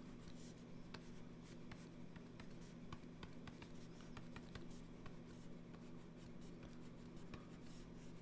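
Faint scratching and ticking of a stylus on a drawing tablet as short pen strokes are drawn, over a steady low hum.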